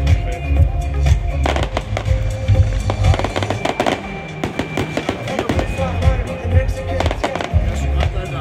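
Aerial fireworks bursting and crackling in rapid succession, over loud music with a heavy bass and held tones.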